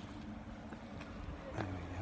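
Quiet outdoor background with a low steady rumble, and a single spoken word near the end.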